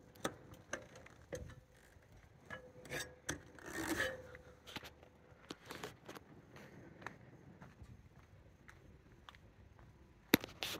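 Faint, scattered knocks, taps and rubbing scrapes from someone climbing down a metal ladder off a van's roof, with a short cluster of scrapes about three to four seconds in.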